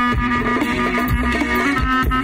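Live folk dance music from a band with electric guitar and keyboard: a held melody line over a steady drum beat.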